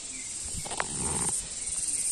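Steady high-pitched chirring of insects, with a short, muffled unidentified sound and a click about half a second in.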